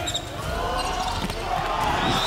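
A volleyball rally with hand-on-ball hits as the ball is set and spiked, and a player's grunt of effort on the spike. Arena crowd noise swells through the rally.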